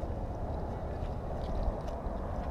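Steady low rumble of wind on the camera microphone and water moving against a small boat's hull, with no distinct events.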